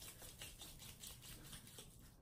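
Palms rubbing quickly back and forth with a pea-sized dab of beard pomade between them, warming it; a faint, fast, even rhythm of strokes.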